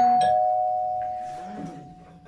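Two-note ding-dong doorbell chime, added as a sound effect: the second note is lower and struck just as the first is ringing, and both fade away over about two seconds.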